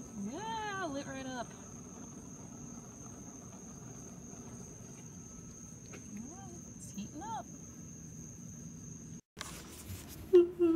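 A steady, high-pitched insect trill, cricket-like, with short wordless voice sounds in the first second and again about six to seven seconds in. It cuts off abruptly just after nine seconds.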